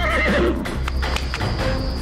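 A horse whinnies, its wavering call trailing off within the first second, followed by clip-clopping hooves, over steady background music.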